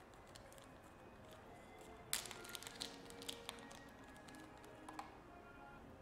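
Faint background music with a few soft clicks and taps as a small aluminum SSD enclosure, its cover and screw are handled. The sharpest click comes about two seconds in.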